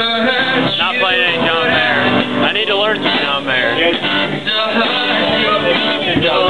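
Acoustic guitar playing with a voice singing over it.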